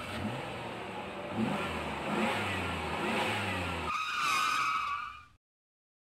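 Motor-vehicle engine sound effect revving in rising sweeps over a steady low drone. About four seconds in it changes to a high, wavering squeal, then cuts off abruptly shortly after five seconds.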